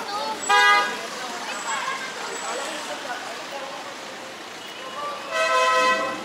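Car horn honking twice: a short toot about half a second in, and a longer, held honk near the end.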